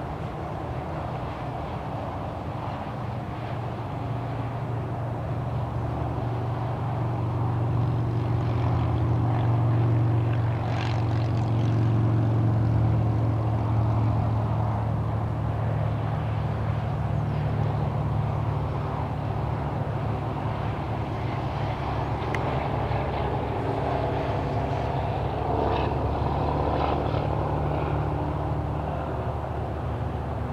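A steady low engine drone from a distant motor, swelling to its loudest about ten to thirteen seconds in and then easing off a little.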